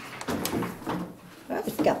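Light knocks and scrapes of a small toy piano bench being handled and set in place inside a wooden playhouse, with a voice near the end.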